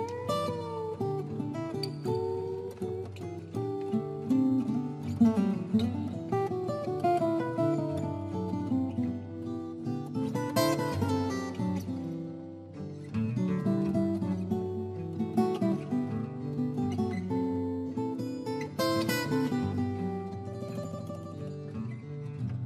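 Acoustic guitars playing an instrumental live: picked single-note lines over a bass, with a note that swoops up and back in pitch at the start, and full strummed chords about halfway through and again near the end.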